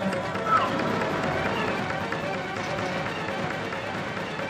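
Footsteps of several people running over rocky ground, mixed with shouting voices and a brief rising cry about half a second in.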